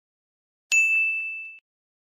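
A single bright ding, a bell-like chime sound effect, striking sharply and ringing for just under a second before it cuts off.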